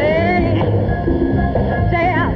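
A woman singing a live big-band ballad over the band's loud accompaniment. A held sung note glides upward in the first half-second, the band plays on alone, and a new wavering sung phrase starts near the end.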